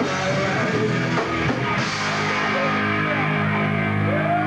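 A four-piece rock band playing live: electric guitar, bass and drums, loud and steady. About halfway through the cymbals thin out and a held chord rings on.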